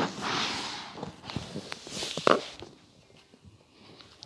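A person rolling over onto his chest on a wooden floor: body and clothing brushing and sliding over the boards, with a few soft knocks as he lands, the sharpest a little over two seconds in.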